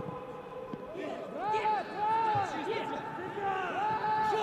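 Men shouting on a football pitch: a string of short raised calls that rise and fall in pitch.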